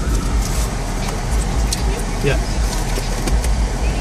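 Car engine idling while stopped, heard from inside the cabin as a steady low rumble, with a few light clicks.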